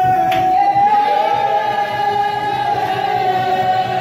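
A congregation singing together in worship, holding one long note.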